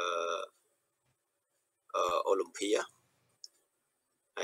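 A man speaking Khmer in a halting way: a drawn-out sound at the start, a pause of about a second and a half, then a short phrase, followed by a faint, short click.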